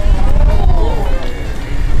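Low engine rumble of a Toyota GR Supra creeping forward at walking pace toward a wheel stop, with voices over it.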